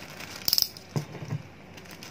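Clear plastic packaging bag holding a figure's plastic sword accessories being handled: a short, sharp crinkling rattle about half a second in, then a few soft knocks.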